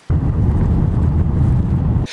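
Loud, steady low rumble of wind buffeting the microphone. It starts abruptly and cuts off sharply near the end.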